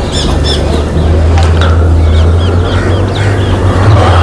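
Birds calling in runs of short, high, arched chirps, twice in quick series, over a steady low hum.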